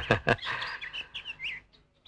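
Small birds chirping: a quick run of short, high chirps that lasts about a second.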